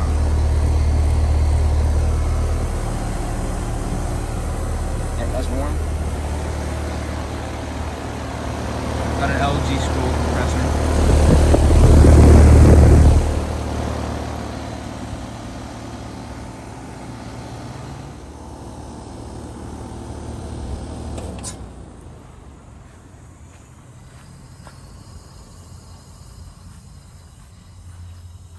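Carrier Sentry 3-ton heat pump outdoor unit running, a steady low hum from the compressor and condenser fan that is loudest about halfway through. About three-quarters of the way through the unit shuts off: the hum cuts out suddenly and the sound drops away.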